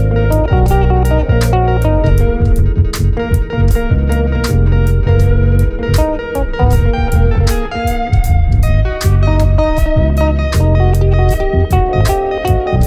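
Instrumental samba-funk arrangement played on electric bass and Nord Stage keyboards: a deep, busy electric bass line under keyboard chords, over a steady, evenly ticking beat.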